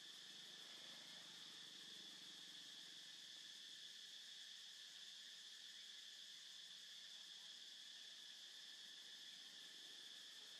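Faint, steady chorus of insects: a continuous high-pitched drone with no breaks.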